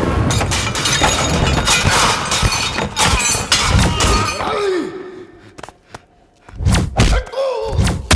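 Film fight sound effects: a rapid run of heavy punch and kick impacts with crashing, breaking objects, then a lull of about a second and a half before more sharp blows near the end.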